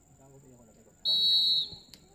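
Referee's whistle blown once, a single steady high blast of about half a second starting about a second in, signalling the kick-off of the second half.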